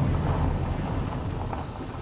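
Strong wind buffeting the microphone through the car's open windows: a low, steady rumbling noise that eases a little toward the end.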